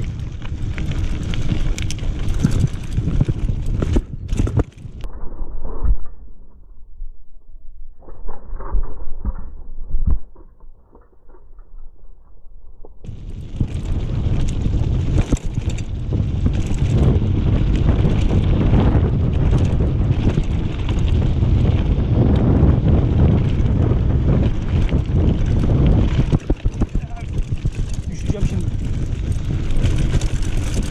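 Mountain bike descending a loose gravel road at speed: tyres crunching over stones and the bike rattling over bumps, with wind rumbling on the camera microphone. The ride goes quieter for several seconds in the first third, then loud and dense again. The rear tyre is pumped too hard, so it knocks over the stones a bit too much.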